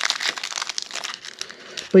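Foil wrapper of a Pokémon TCG booster pack crinkling as it is worked open by hand, a dense crackle that thins out in the second half.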